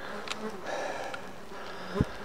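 A flying insect, fly-like, buzzing close to the microphone in a steady, slightly wavering drone. A sharp knock comes right at the end.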